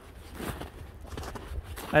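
Footsteps in snow: a few soft, irregular steps, with the start of a man's voice at the very end.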